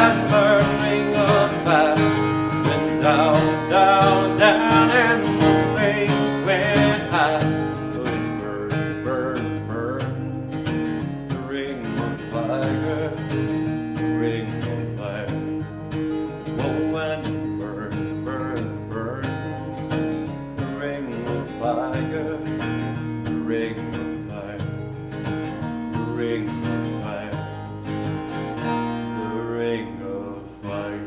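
Martin acoustic guitar strummed in steady chords with a man singing along, the strumming gradually getting quieter toward the end.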